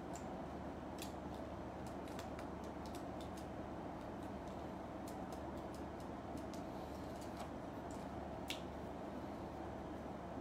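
Faint scattered clicks and ticks of a Metal Build Freedom Gundam figure's jointed parts being handled and posed, with one sharper click about eight and a half seconds in, over a steady low room hum.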